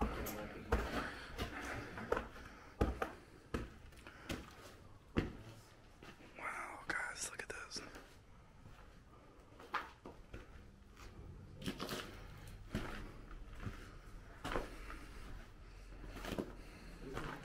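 Footsteps going down debris-littered concrete stairs and along a rubble-strewn hallway floor: irregular sharp steps and scuffs. A faint whispered voice comes in about six seconds in.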